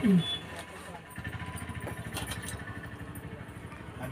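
A chanted word trails off at the very start. Then comes a lull of low, steady background hum and faint voices, with a few light clicks about two seconds in.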